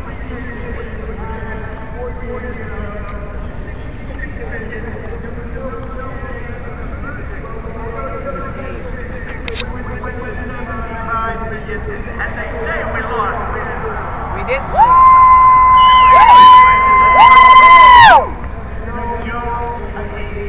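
Murmur of distant voices, then about fifteen seconds in a loud, high, horn-like tone blown in a few blasts over about three seconds, each bending up in pitch at its start and sliding down at its end.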